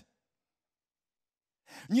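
Complete silence during a pause in a man's speech, with his voice coming back in near the end.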